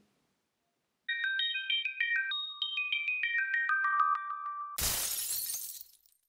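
Short outro jingle of bright, chime-like electronic notes struck in small chords, the melody stepping lower overall. Near the end a sudden burst of noise, like a shattering sound effect, cuts in and fades over about a second.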